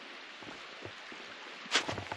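Steady rushing of a shallow creek running over rocks, with faint footsteps on dry leaves and gravel and one sharper crunch near the end.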